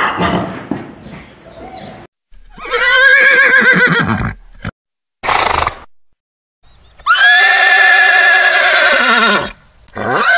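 Horses whinnying: a quavering whinny about two to four seconds in, a short rough sound around five seconds, then a long whinny from about seven seconds in that drops in pitch at its end.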